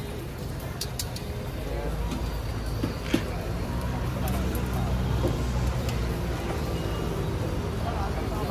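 Metal tongs clicking against fried chicken chops and a metal tray, a sharp click about three seconds in, over a steady low rumble and background voices.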